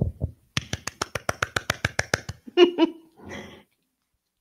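Quick, even hand clapping, about fourteen claps in under two seconds, then a short vocal call and a breathy burst.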